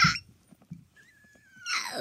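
A girl's laugh that breaks off right at the start, a short quiet gap, then a faint, thin high-pitched vocal sound that drifts slightly down, before talking starts again near the end.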